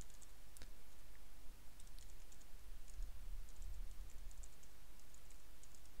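Computer keyboard being typed on: a run of light, irregular key clicks over a low steady hum.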